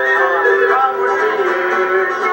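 A man singing a song while strumming an acoustic guitar.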